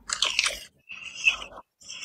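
A person biting and chewing something crunchy close to the microphone, in a few short crunching bursts.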